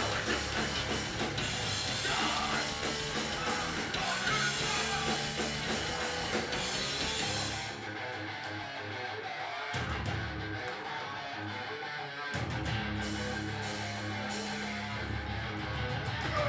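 Live hardcore punk band playing loud, with distorted electric guitar, bass and drum kit. About halfway through, the cymbals drop out and the band plays a sparse stop-start passage for about four seconds, then the full band comes back in.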